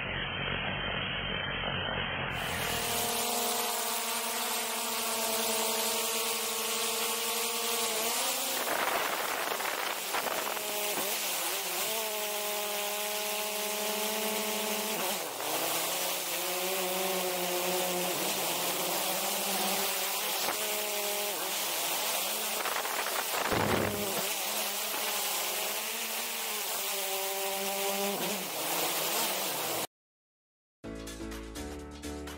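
Quadcopter drone (DJI Mavic 2) propellers and motors heard from close underneath: a whining buzz of several tones that glide up and down as the motors change speed, over a steady rushing hiss. About two seconds in it changes from a muffled, dull sound to a bright, full-range one.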